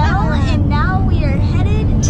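Steady low rumble of road and engine noise inside a moving car's cabin, under a woman's laughing voice in the first second or so.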